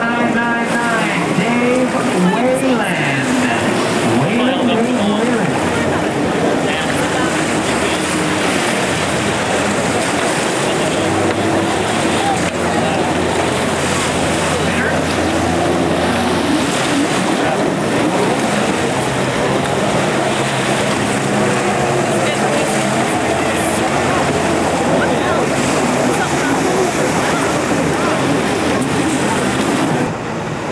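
Two-stroke jet ski (personal watercraft) engines racing on open water, their pitch rising and falling as the riders throttle through a buoy turn, over background voices.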